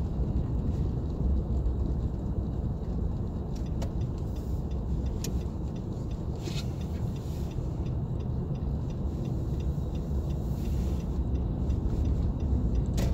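Car driving on snow-covered road, heard from inside the cabin: a steady low rumble of engine and tyres, with a few faint clicks.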